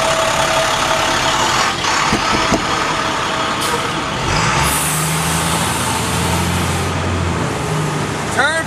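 School bus driving past at close range with loud engine and road noise. A low engine hum comes in a little after halfway, and a high hiss sounds for about two seconds.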